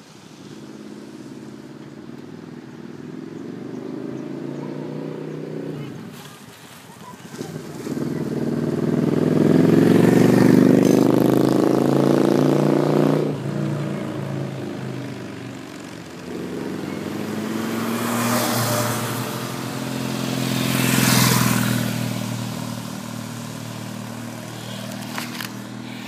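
Motorcycles riding past one after another, their engines growing louder as they approach. The loudest pass comes about ten seconds in, and a second group follows with two close passes a few seconds apart.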